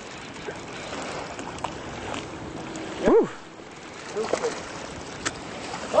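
Steady wind and water noise in the open air of a small boat, with a few faint clicks.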